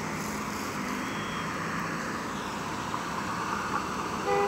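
Steady street traffic noise, with a vehicle engine hum in the first second or so.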